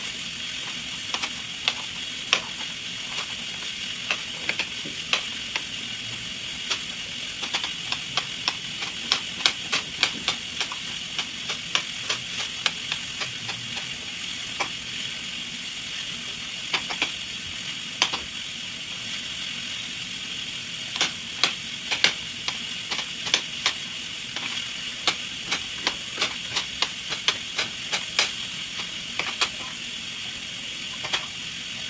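Knife chopping green bell pepper on a cutting board: quick, irregular runs of sharp taps with short pauses between them, over a steady hiss.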